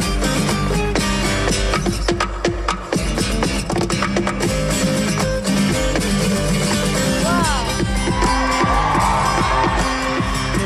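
Acoustic guitar played solo fingerstyle, fast and rhythmic, mixing plucked notes with percussive slaps and taps on the guitar body. The audience starts cheering over it in the second half.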